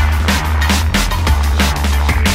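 Drum and bass music in a DJ mix of vinyl records: fast, busy breakbeat drums over a continuous heavy sub-bass.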